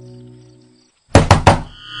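A held musical chord fades out, then about a second in come three loud thunks in quick succession. Near the end a new sound of steady tones begins.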